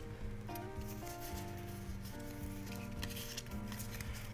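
Quiet background music of held notes that change every half second or so, with faint clicks and rustles of trading cards being handled.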